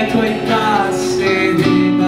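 Acoustic guitar strummed together with an electric guitar, playing a song live, with a sliding melodic line over the chords.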